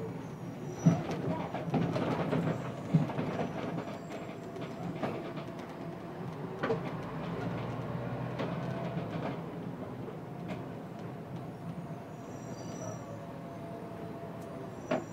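City bus interior on the move: the engine runs steadily under rattles from the body, with sharp knocks about one second and three seconds in.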